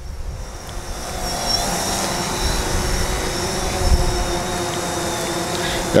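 DJI Phantom 4 Pro quadcopter's propellers whining steadily as it comes down to land on a puddle, louder over the first second and then even, with a low rumble under the whine.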